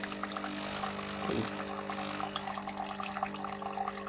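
Pod coffee machine dispensing coffee into a glass mug: a steady hum from the machine's pump under the trickling, bubbling sound of the coffee stream filling the mug.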